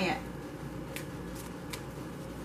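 Tarot cards being handled: a few light, short clicks of card against card as a card is picked up and moved, over a steady low background hum.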